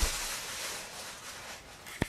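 Rustling handling noise, loudest at the start and fading over about a second, with one sharp click near the end.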